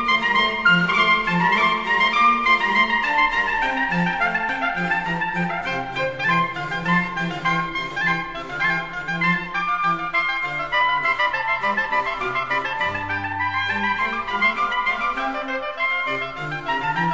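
Instrumental sacred music: a busy run of many quick notes over lower bass notes held for a second or more.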